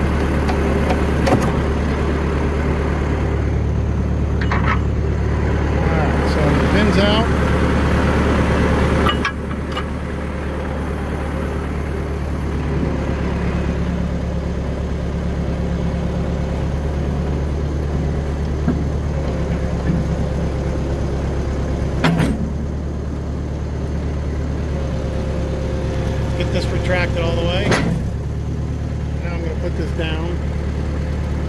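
John Deere 450 crawler loader's engine running steadily while its backhoe hydraulics are worked. The engine note drops and changes under load about nine seconds in and again around twenty-two seconds in, with a few sharp clunks.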